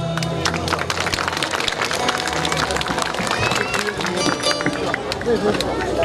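Audience applause, a steady patter of many hands clapping, with crowd voices mixed in.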